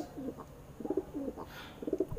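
Domestic pigeons cooing: a series of short, low, rolling coos.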